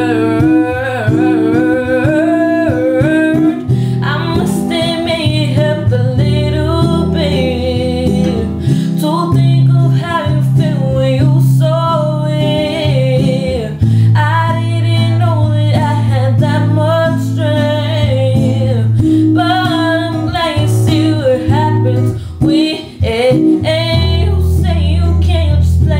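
A woman singing an R&B ballad over guitar accompaniment, her voice sliding through melismatic runs.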